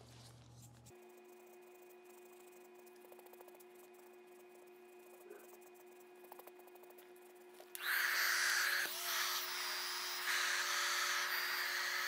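Faint steady hum until, about eight seconds in, a hand-held hair dryer switches on and blows steadily over the wet alcohol ink on the linen, its level shifting a little as it is moved.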